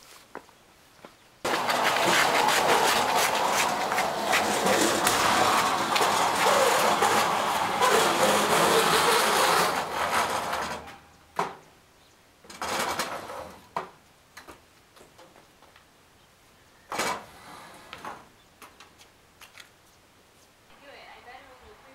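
A metal electric range scraping along a concrete driveway as it is shimmied and dragged: one long continuous scrape lasting about nine seconds, then a few short scrapes as it is nudged into place.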